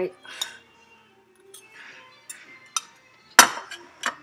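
A fork clicking and clinking against a plate while eating: a few light clicks, then one sharp clink about three and a half seconds in.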